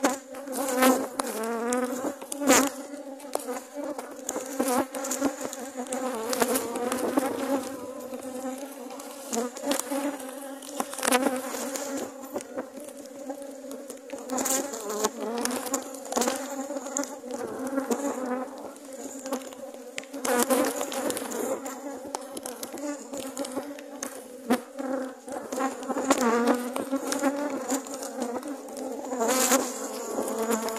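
A mass of honeybees buzzing steadily around an open hive, with single bees whining past close by, their pitch sliding up and down. A few sharp knocks sound as the wooden hive frames are handled.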